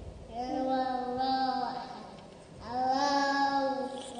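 A young child singing two long, held notes, each lasting about a second and a half, with a short break between them.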